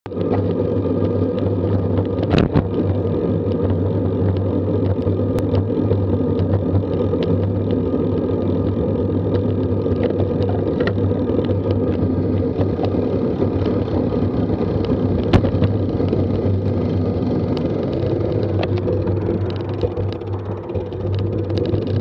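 Wind and road noise on a bicycle-mounted action camera while riding, a steady low rumble with a few sharp knocks from bumps in the road. The rumble eases a little near the end as the bike slows.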